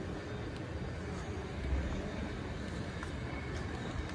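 Outdoor ambience: a steady low rumble with a brief louder low swell just before the middle, and a few faint ticks.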